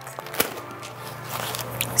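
Paper coffee filter rustling as it is lifted off a glass jar and set down, with a sharp click about half a second in.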